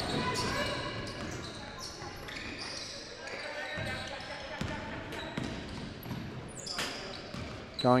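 Live basketball court sound in an echoing gym hall: a basketball bounced a few times on the wooden floor, with players' voices calling in the background.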